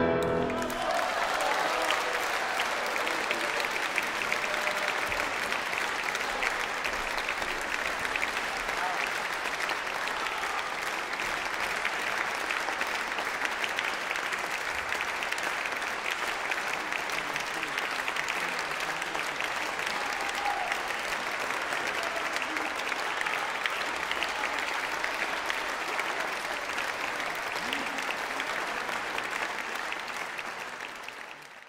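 Audience applauding steadily, beginning as a held trombone note with piano cuts off at the very start.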